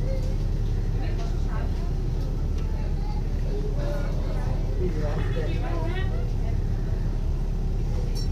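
Alexander Dennis Enviro 500 double-decker bus heard from inside the saloon: a steady low engine drone and rumble, with passengers' voices talking in the background.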